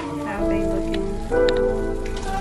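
Quesadillas frying in a nonstick skillet, a steady sizzle, heard under background music with held notes.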